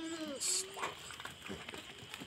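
A goat bleats once, a rising-then-falling call that ends just after the start. About half a second in comes a short sharp hiss, the loudest sound, followed by a brief steady lower call.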